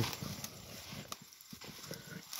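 Dry grass rustling and crackling as a person steps through it and bends into it: faint, irregular crunches.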